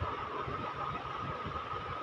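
Steady background noise with a faint steady high hum, like a running motor or fan.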